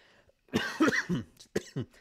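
A man coughing twice: a longer cough about half a second in and a short, sharp one near the end.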